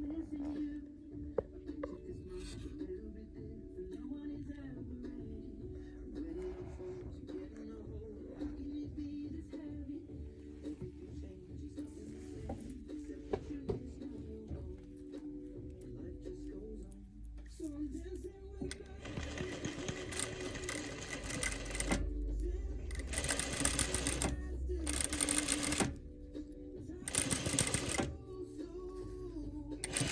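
Industrial sewing machine stitching lace in about four short runs, each a second or two long, in the second half, over background music with singing.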